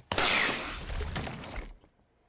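A sudden crash with a shattering, clattering noise that dies away over about a second and a half.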